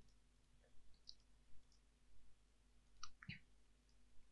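A few faint computer mouse clicks in near silence, the clearest pair about three seconds in, as slides are duplicated from a right-click menu.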